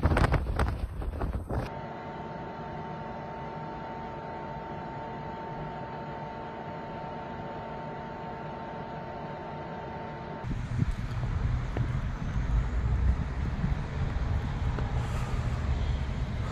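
Three storm recordings in a row. First, a rapid run of crunching footsteps in snow for under two seconds. Then a quieter steady hum with a faint high tone, and from about ten seconds in, louder gusty wind buffeting the microphone.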